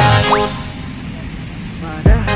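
Background music that breaks off just after the start with a quick rising whistle-like "boing" sound effect, then a brief lull before the beat comes back in at the end.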